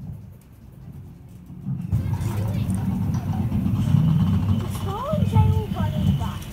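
Indistinct voices over a low rumble, which gets much louder about two seconds in.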